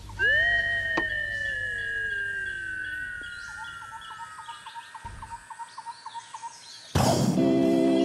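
Intro sound effects: a long tone gliding slowly downward over about three seconds, over a run of short, quickly repeated chirps and a low hum. About seven seconds in, music starts suddenly with a loud, sustained chord.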